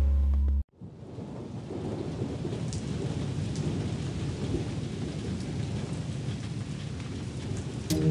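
Steady rain, an even hiss of falling water, begins just after music cuts off abruptly about half a second in.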